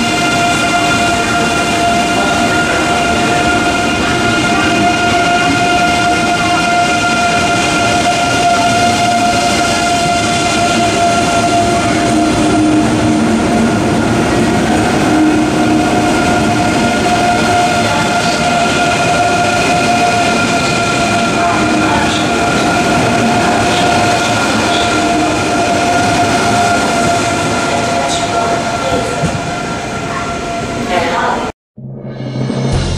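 ICE 3M high-speed electric train pulling out past the platform: the rolling noise of its cars with a steady whine at several fixed pitches from its electric drive, and occasional faint clicks from the wheels.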